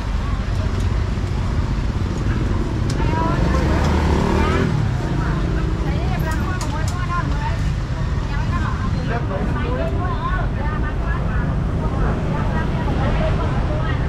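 Busy street-market ambience: people talking at and around a food stall over a steady low rumble of motorbike and road traffic.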